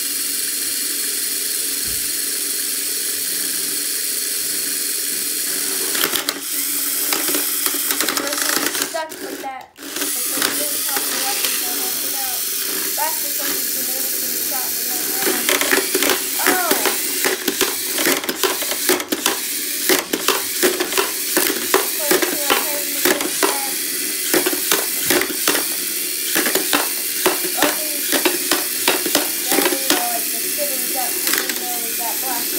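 Hexbug BattleBots toy robots running: a steady whirring hiss of their small electric motors and spinning disc weapon. From about halfway through, a rapid clatter of plastic knocks as the robots hit each other and the arena.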